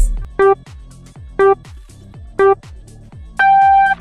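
Race-start countdown: three short electronic beeps about a second apart, then a longer beep an octave higher that signals the start, over background music.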